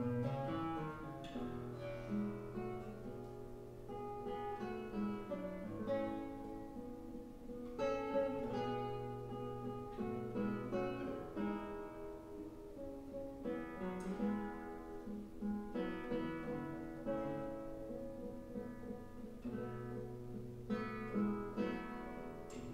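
Solo classical guitar played fingerstyle: plucked notes and chords over a recurring low bass note, starting right at the beginning.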